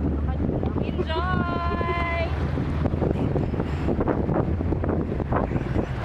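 Outboard motor of a speedboat running steadily under way, with wind buffeting the microphone and water rushing past the hull. About a second in, a person gives a long, high, held cry lasting about a second.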